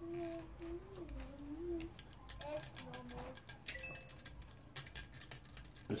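A man humming a wavering tune under his breath, mixed with light metallic clicks and rattles. The clicks come from the mounting bracket and its clips being handled and fitted onto the plastic pump block of an all-in-one CPU water cooler. They grow busier from about halfway through.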